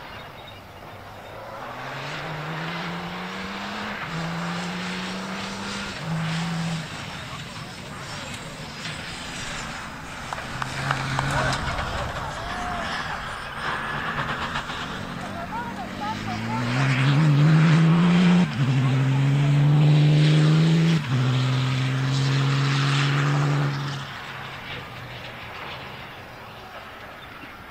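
Rally car engine accelerating hard through the gears on a gravel stage: each gear's rising pitch is cut short by a quick upshift. It comes first at a distance, then much louder as a car passes close in the second half, with two sharp shifts.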